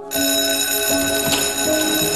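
Electric school bell ringing loudly, starting abruptly just after the start and ringing on steadily.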